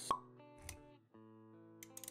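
Music and sound effects for an animated logo intro: a sharp pop just after the start, then soft held notes with a low thud partway through and a few clicks near the end.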